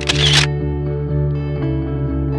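Instrumental background music with steady bass notes. Right at the start, a brief camera-shutter click over the music.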